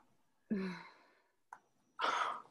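A woman's short sigh: a breathy voiced exhale that drops in pitch and fades out, followed by a faint click.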